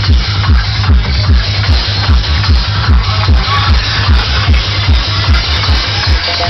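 Psytrance dance music played loud through a PA sound system: a deep kick drum on every beat, a little over two a second, under a dense electronic texture.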